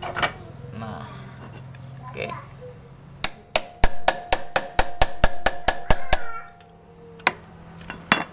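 Hammer tapping a steel drift rod: about fifteen quick metallic strikes, roughly five a second, ringing, starting about three seconds in, then one more strike a second later. The rod is being driven into wet paper packed in the starter-pinion bushing bore of a scooter crankcase, hydraulically pushing out the worn, loose bushing.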